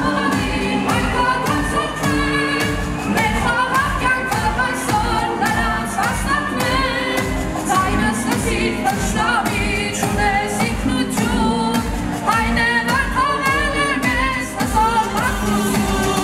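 A boy singing into a microphone over amplified dance music with a steady beat, heard through the hall's PA speakers.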